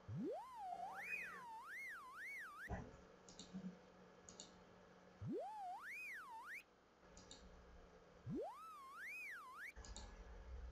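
Electronic indicator tone of a vegetative resonance test (Vega-test) measuring device, heard three times as the probe is applied to the patient's fingertip. Each time it glides quickly up from a low pitch, wavers up and down between mid and high pitch, then cuts off suddenly. The tone's pitch follows the skin-conductance reading on the measurement graph.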